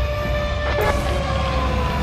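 A siren wailing: its pitch, risen just before, peaks early and then slowly falls, over a deep low rumble.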